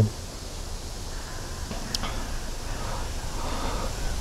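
Steady outdoor background noise: a low rumble with a light hiss, and a single brief click about two seconds in.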